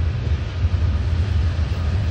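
Freight train of tank cars rolling past close by: a steady, loud rumble of steel wheels on the rails.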